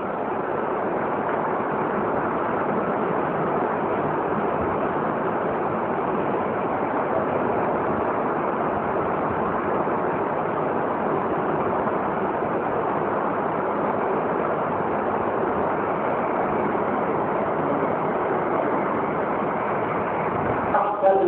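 Steady, even hiss of static noise at a constant level, with no voice or tone in it; it starts and stops abruptly, cutting into the speech on either side.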